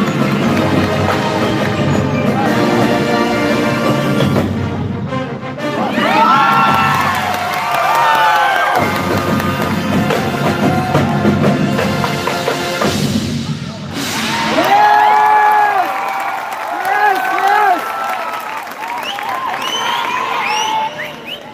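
Marching band playing its competition show: brass, drums and front-ensemble percussion, thinning briefly about five seconds in, then long held notes that bend in pitch.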